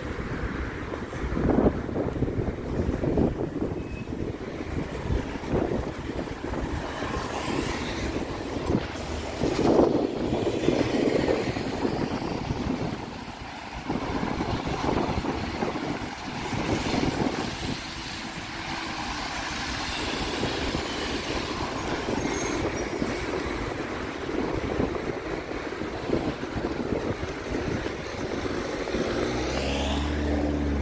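Road traffic passing: cars and a double-decker bus driving by on a wet road, a steady noise with low rumble and a few louder swells as vehicles go past.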